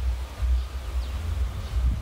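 Low, uneven rumble of wind buffeting the microphone outdoors.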